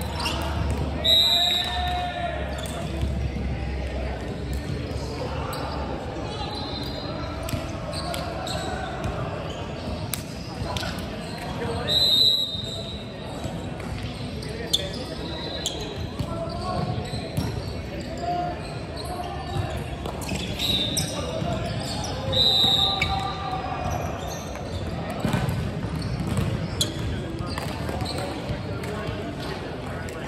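Indoor volleyball play echoing in a large hall. Several sharp hits and bounces of the ball come at intervals, with short high squeaks of shoes on the wooden court at several points and players' voices in the background.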